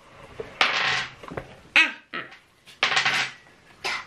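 Stiff cardboard flashcards being handled and set down on a wooden table, with rustling and light taps. One short vocal sound comes about halfway through.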